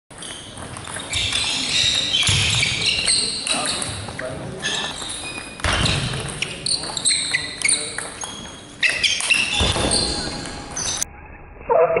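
Table tennis ball clicking off bats and table during a rally, ringing in a large sports hall, with voices and play from other tables around it.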